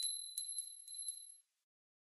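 High bell-like ding of an outro sound effect ringing on, with four lighter strikes in quick succession, dying away about a second and a half in.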